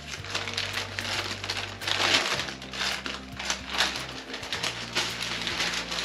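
Paper packaging and a folded paper leaflet rustling and crinkling in irregular bursts as they are handled and unfolded, over background music with low held notes.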